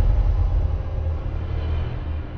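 Deep, steady rumble of a logo intro sound effect, easing off slightly.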